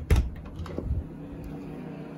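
Interior door's metal knob turned and the latch clicking as the door is pushed open, with low thumps just after the start and again about a second in, then a steady low hum.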